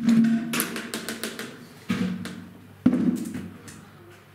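Three loud knocks, each followed by a short low ring, with a quick run of clicking taps after the first.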